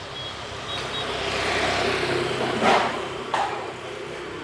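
A motor vehicle passing along the street: engine and road noise swelling over a couple of seconds and then easing off. Two short knocks come near the end.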